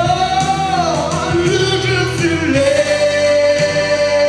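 A man singing a French pop ballad live into a handheld microphone over an instrumental accompaniment, holding long notes: one slides down about a second in, and another is held steady from about two and a half seconds in.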